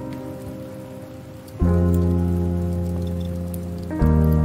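Background music: slow, sustained chords, each fading gently, with a new chord struck about a second and a half in.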